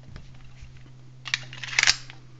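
A Kahr K40 pistol being handled and picked up off a cloth-covered table: a few faint clicks, then a short cluster of sharp clicks and scrapes about a second and a half in, over a low steady hum.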